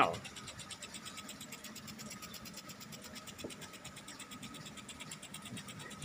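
Faint steady hiss of pitch sprinklers spraying water over the grass, with a thin steady tone underneath.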